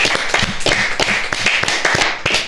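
A small group of people clapping their hands, a quick, irregular run of claps.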